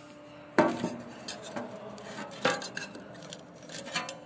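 Metal parts of a microwave oven being handled, giving sharp clinks and knocks: a loud one about half a second in, another about two and a half seconds in, and lighter clicks between.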